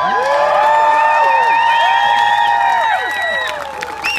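Group of men's voices giving the long closing cry of a haka: many shouts held together, sliding in pitch, which fall away and break off about three and a half seconds in.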